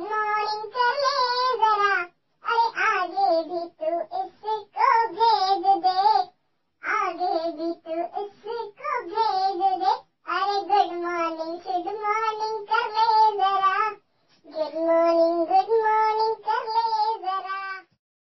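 A high, child-like voice singing a Hindi 'good morning' song unaccompanied, in phrases of a few seconds each with short silent breaks between them.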